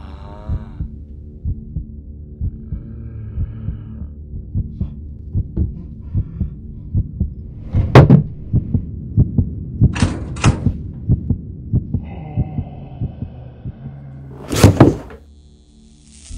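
Film soundtrack of a heartbeat: rapid, even low pulses over sustained droning tones, punctuated by sharp loud hits about halfway through, twice around ten seconds, and once more near the end, after which it drops away.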